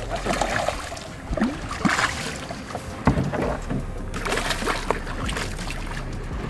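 A hooked snook thrashing and splashing at the water's surface beside a boat, in irregular bursts of splashing with a few knocks.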